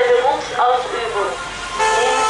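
Car horns honking from a line of passing cars, with a steady horn note starting near the end, under an amplified voice announcement.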